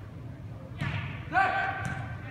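A player's long, high shout rings out in a large echoing sports hall, starting a little past halfway and held for about half a second. It comes after a short burst of noise and a thump, amid the faint hubbub of play on indoor turf.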